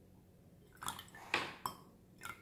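Milk being poured from a carton into a glass measuring cup. It is faint at first, then a handful of short, sharp splashing sounds come in quick succession about a second in.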